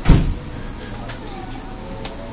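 Steady noise inside a Kita-Osaka Kyuko 9000 series train car, with one loud, short low thump just after the start.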